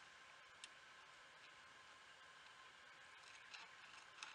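Near silence: a faint steady hiss with a few soft, scattered clicks.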